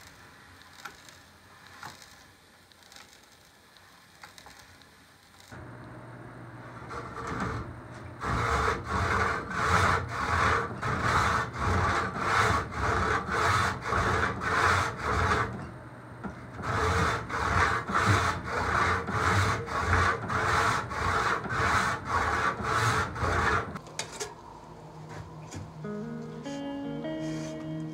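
Hand saw cutting a long wooden strip with steady back-and-forth strokes, about two a second. The sawing starts after a few quiet seconds and stops briefly about two-thirds of the way through.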